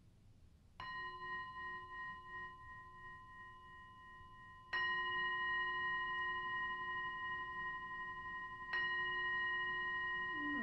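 Hand-held metal singing bowl struck three times with a mallet, about four seconds apart, each strike ringing on in several steady overlapping tones. The second and third strikes are louder than the first.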